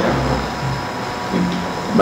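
A man's voice makes a few short, soft, low murmurs over the steady hiss and faint high whine of an old lecture recording.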